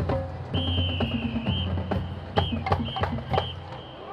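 Marching band drums and low brass playing, with repeated drum strikes over low held notes. A high, shrill whistle-like tone sounds over them from about half a second in, wavers, then comes in short blasts. The music fades out just before the end.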